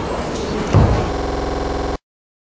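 Microphone handling noise: rustling, a loud low thump about a second in, then a steady electrical buzz that cuts off abruptly.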